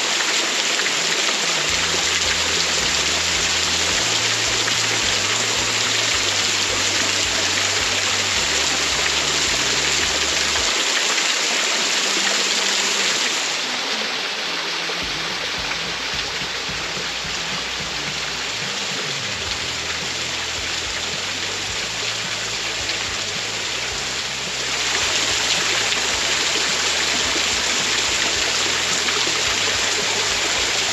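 Small waterfall, thin streams of water splashing and trickling onto rock ledges, a steady rushing patter. It turns a little quieter and duller for about ten seconds midway, then comes back to full strength.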